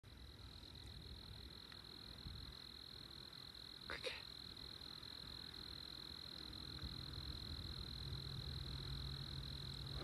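Crickets trilling steadily, one continuous high-pitched trill, on a warm November night. A short, sharp noise cuts in about four seconds in, and a low steady hum joins at about seven seconds.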